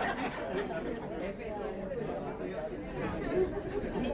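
Several people talking quietly over one another: low, indistinct chatter of a small audience in a room.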